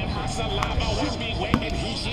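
A rubber kickball kicked: one sharp thud about one and a half seconds in, over players' voices.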